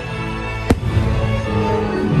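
A single sharp firework bang about a third of the way in, over music with held notes from a fireworks show.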